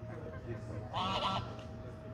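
A domestic goose on the water gives one short honk about a second in.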